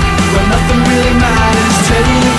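Heavy rock song with distorted electric guitars over bass and drums, playing loud and steady.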